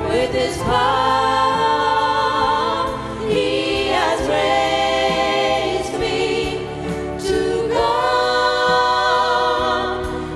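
Small mixed youth vocal ensemble singing a gospel song in harmony into handheld microphones, holding several long chords with short breaks between phrases.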